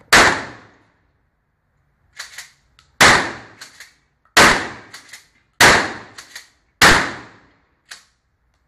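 Remington 870 pump-action shotgun fired five times, the shots about one and a half seconds apart after a longer pause following the first. Between shots the pump is racked, giving a quick double clack before each next shot.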